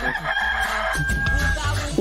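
A rooster crowing as a sound effect: one long, held crow lasting about a second and a half, over background music with a beat.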